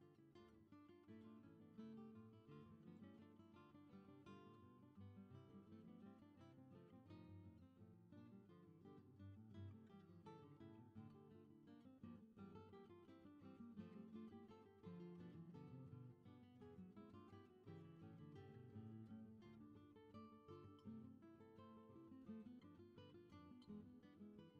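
Quiet background music of a plucked acoustic guitar, a steady flow of changing notes.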